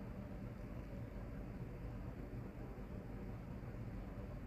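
Steady low hum with faint hiss: background noise of the recording, with no distinct event.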